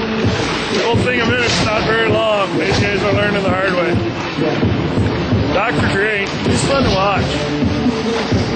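Voices mixed with background music, with held steady notes under wavering sung or called pitches; no single sound stands out above them.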